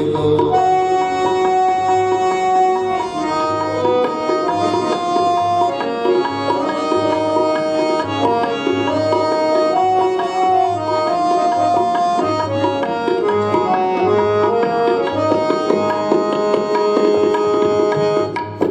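Harmonium playing a melody of long held notes that step from pitch to pitch, with tabla keeping a steady beat underneath: an instrumental passage of devotional kirtan with no singing.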